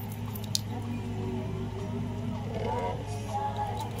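Soft squishing of clear eyebrow gel being taken up and worked, with one sharp click about half a second in, over quiet background music.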